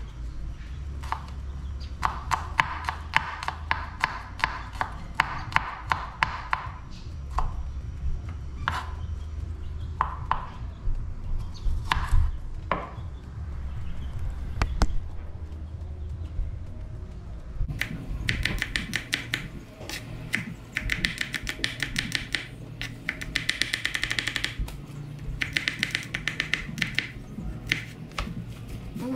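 Chef's knife chopping garlic on a wooden cutting board: quick runs of strikes a couple of seconds in, scattered single knocks in the middle, then denser bursts of rapid chopping through the last ten seconds.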